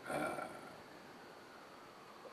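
A man's short hesitant "uh", then quiet room tone.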